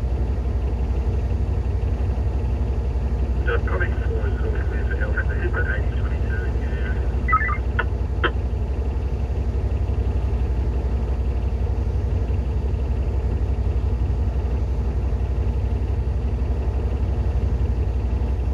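Cat D11T dozer's C32 diesel engine idling with a steady low rumble, heard from inside the cab.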